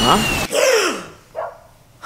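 A man's startled "What?", then a voiced cry that falls in pitch and a short sharp breath, as of someone jolting awake from a dream.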